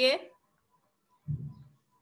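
A woman's voice ends a word, then near silence, broken about a second and a half in by a brief, low, muffled sound.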